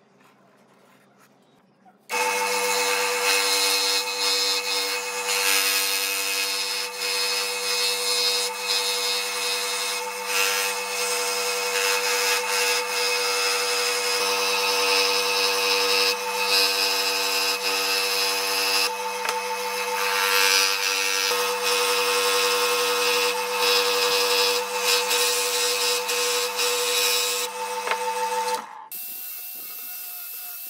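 Electric scroll saw running and cutting a circle out of a wooden board: a steady motor hum with the blade rasping through the wood. It starts about two seconds in and stops near the end, where a quieter, higher whine of an angle grinder takes over.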